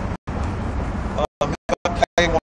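Steady background rumble of road traffic, broken by several brief dropouts where the sound cuts out entirely in the second half, with short bits of a man's voice near the end.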